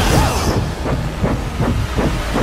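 Loud action-movie sound effects: a helicopter's rotor and a heavy truck's engine, a swooping rush that turns into a quick rhythmic chop of about four or five beats a second, over hissing noise.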